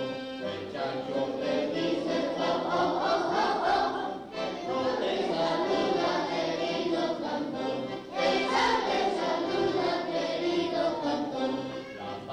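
A group of young children singing a song together in unison, accompanied by a piano accordion, with brief pauses between phrases about four and eight seconds in.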